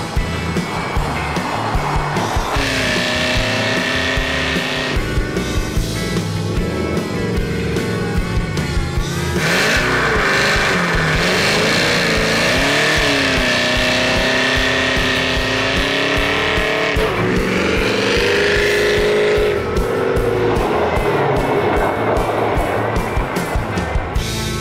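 Supercharged GM V8 of the Cadillac CTS-V type, with an Eaton blower, in a 1969 Ford F100 pickup, driven hard. Its pitch rises and falls repeatedly as it revs and shifts, with music mixed underneath.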